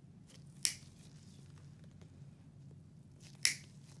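Toenail nippers cutting through thick fungal toenail: two sharp snaps, nearly three seconds apart, with a few fainter clicks between.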